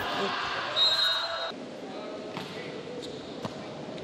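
Players and crowd shouting in a gymnasium as a volleyball rally ends, with a referee's whistle blown once about a second in. Then quieter hall noise with a few ball bounces on the court floor.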